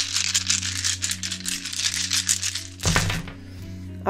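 Tarot cards being shuffled by hand: rapid, dense clicking for nearly three seconds, ending in one louder slap of cards. Soft background music with steady held notes plays underneath.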